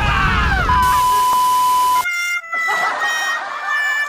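Edited-in cartoon sound effects: sounds sliding down in pitch, then a steady high beep for about a second that cuts off sharply about halfway through, followed by held horn-like tones.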